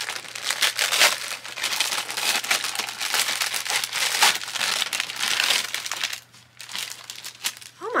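Gift wrapping paper being torn open and crumpled by hand, a dense crinkling and rustling that lasts about six seconds and then eases off.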